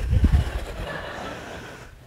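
Audience laughter in a large room, dying away over about two seconds, with a low rumble in the first half second.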